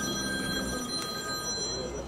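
Several steady high-pitched electronic tones sound together and cut off near the end, over a man's quiet, drawn-out hesitation sound.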